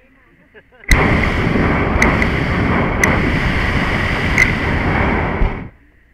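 Hot-air balloon's propane burner firing in one blast of about five seconds, a loud steady rushing noise that starts suddenly about a second in and cuts off sharply, with a few sharp clicks over it.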